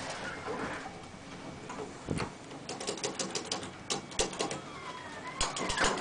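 Clicking of 1983 Otis Lexan elevator car call buttons being pressed, a quick run of clicks about halfway through and another cluster near the end. A faint sliding tone runs under the clicks.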